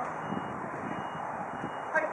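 Steady outdoor background hiss with faint, distant shouts from players on the court.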